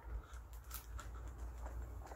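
Faint rustling and a few small ticks as hands rummage through small items in a cardboard box, over a steady low rumble.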